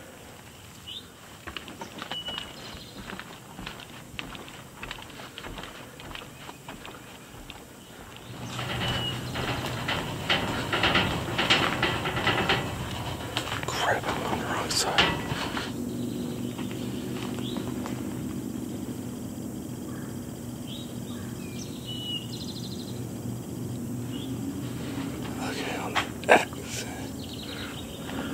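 Faint outdoor ambience with a few bird chirps, then, about eight seconds in, a louder stretch of clattering and rattling as a roller coaster train runs along its track. After that a steady low hum carries on.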